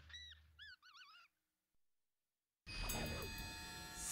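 A quick run of high, warbling chirps, a cartoon sound effect closing the theme song. Then about a second and a half of silence, and at about three seconds a steady music bed with sustained tones begins.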